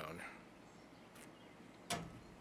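A quiet pause after a voice trails off, with a single short, sharp click near the end.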